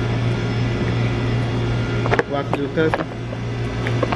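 Steady low hum of room noise, with a short stretch of a voice about two seconds in.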